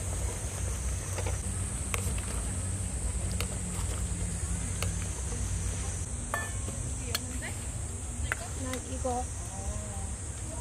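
A ladle tapping and scraping against a camping pot as ramyeon noodles are stirred, a few sharp separate clicks, over a steady high insect drone and a low rumble.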